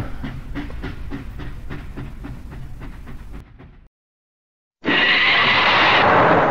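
Battery toy train running on plastic track, clicking evenly about four times a second. The sound cuts out abruptly near four seconds in, and about a second later a loud hiss with a high whistling tone starts.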